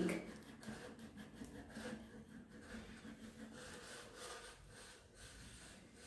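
Faint, irregular rustling of a long paper strip being handled and pulled along.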